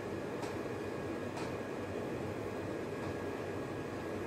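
Steady background hiss with two faint light clicks, about half a second and a second and a half in, as .177 pellets are pressed into the chambers of an eight-shot rotary pellet magazine.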